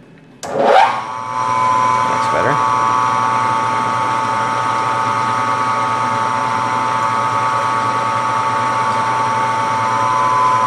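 Vertical milling machine spindle switched on about half a second in, whining up in pitch to speed within a second, then running steadily with a high whine. It is spinning an edge finder in its collet, not yet touching the aluminium rail.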